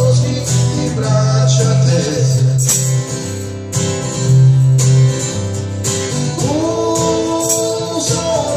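Acoustic guitar strummed in a song with a man singing; a long sung note begins about six and a half seconds in.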